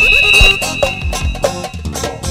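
Wedding dance music with a regular drum beat and bass line, and a long held high note over it that fades about halfway through.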